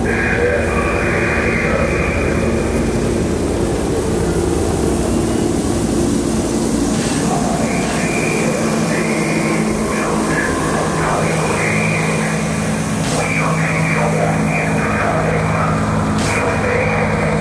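Electronic intro music: a sustained low synthesizer drone with wavering voice-like sounds over it.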